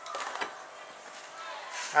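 Faint knocks and scuffs as a light wooden dragster chassis is handled and turned round on a cutting mat, mostly in the first half second, then little but room noise.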